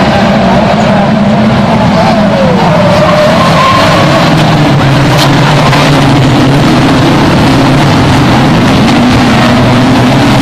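A pack of banger racing cars' engines running together as they drive past, with a few engines rising and falling in pitch as they rev.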